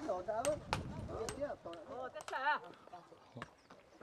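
Hand hammers striking limestone rubble in irregular sharp knocks, about half a dozen in a few seconds, as stone is broken by hand. Voices talk in the background.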